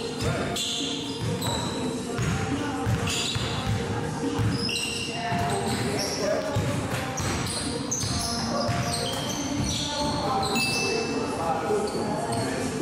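Basketball bouncing on a hardwood gym court during a pickup game, with short high squeaks and players' voices echoing in the large hall.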